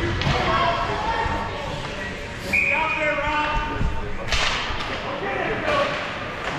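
Voices of spectators calling out in an ice hockey rink, echoing in the hall, with a couple of sharp knocks from the play on the ice in the second half.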